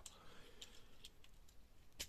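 Near silence with a few faint clicks as the pincers of a Godaikin die-cast toy jet are pushed into place by hand.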